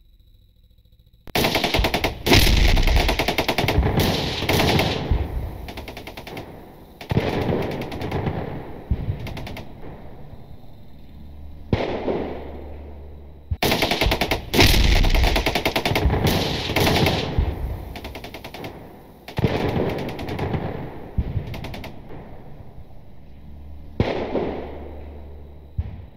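Air-delivered weapons striking a ground target: rapid firing and detonations in about six separate bursts. Each starts suddenly and dies away over a couple of seconds, with the loudest near the start and about fifteen seconds in.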